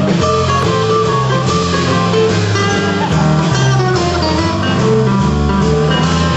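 Live band playing an instrumental break: strummed guitar over a drum kit, bass line and held keyboard notes, with no singing.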